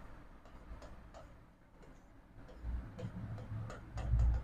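Chalk on a blackboard: light, irregular ticks and taps as strokes and dashes are written, with a few soft low thumps in the last second and a half.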